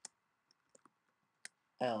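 A few scattered keystrokes on a computer keyboard, about five separate clicks, the sharpest ones at the very start and about a second and a half in.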